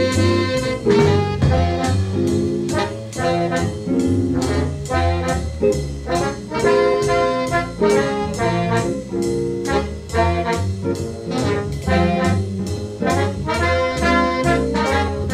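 Big-band modern jazz recording: a college jazz orchestra's brass and saxophone section playing chords over a steady beat.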